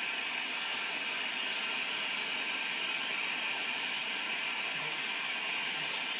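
A lampworking bench torch burning with a steady, even hiss.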